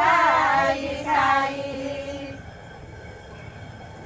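Women singing an ovi grinding song together, the phrase ending about a second and a half in on a held note, over the continuous low rumble of a hand-turned stone grinding mill (jate).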